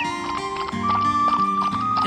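Background music with held notes, over a cartoon sound effect of galloping horse hooves clip-clopping in a quick steady beat.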